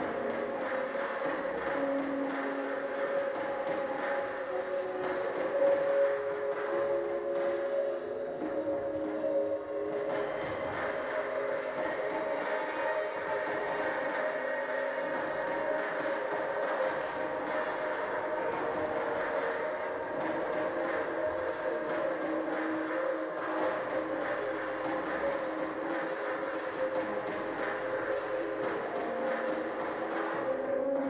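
Recorded soundtrack for a contemporary dance piece: a steady drone of long held tones over a rushing, rumbling noise, with no beat, the tones changing pitch every few seconds.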